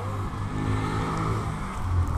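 A motor vehicle's engine running steadily on the street, a low hum.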